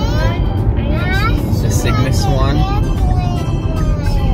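Steady low road rumble inside a moving car's cabin, with high children's voices over it.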